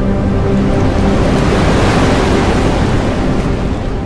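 Cinematic intro soundtrack: a loud rushing noise swell that builds to a peak about halfway through and then eases off, over a low music bed.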